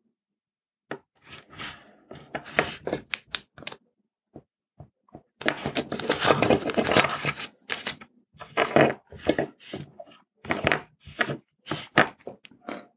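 Masking tape being peeled off a small circuit board and crinkled, in irregular crackling tearing bursts with sharp clicks, the longest stretch about halfway through.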